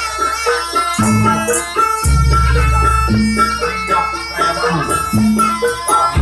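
Live jaranan gamelan accompaniment: a nasal reed pipe melody over kendang drum, metallophone and gong, with a deep low stroke about once a second.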